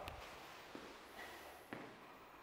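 Faint footfalls of several people stepping on a wooden floor in a quiet hall, with two light taps about three-quarters of a second and just under two seconds in. At the start, the echo of a loud voice dies away.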